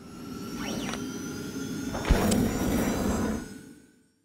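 Logo sound effect: a swelling whoosh with a sharp hit about two seconds in, fading out near the end.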